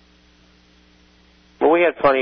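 Faint, steady electrical mains hum on the recording during a pause in the talk. Speech resumes about one and a half seconds in.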